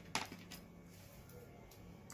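A short click about a tenth of a second in, then a few faint ticks over quiet room tone: a mobile phone being handled and raised to the ear.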